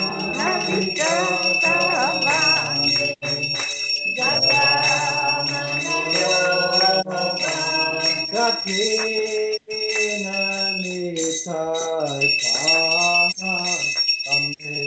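Devotional chanting, a voice singing a melodic kirtan line, over a bell ringing steadily throughout.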